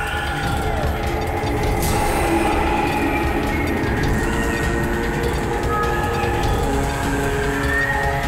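Tense background music: a loud, steady drone of held tones over a dense low rumble.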